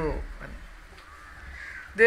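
Two faint bird calls in a lull between a man's sentences, one about a second in and one near the end; the tail of a spoken word fades out at the start.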